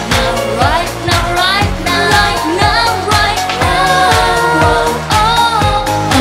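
A woman singing a Vietnamese pop song over band backing with a steady beat.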